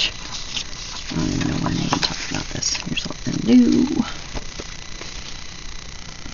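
Wordless murmured vocal sounds from a woman: a low, rough drawn-out grumble about a second in and a short hum a little after the middle. Faint clicks and paper rustles from handling sticker sheets lie under them.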